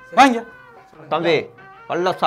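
Cat meowing, about three short calls in a row, over faint steady background music.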